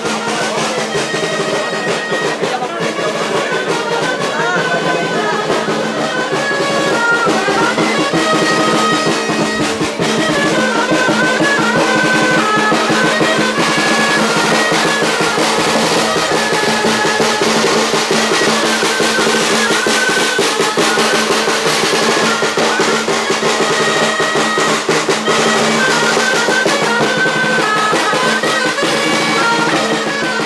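A small street band of clarinets and a snare drum playing a lively tune together. The clarinets carry the melody over a steady, rapid snare beat, growing a little louder after several seconds.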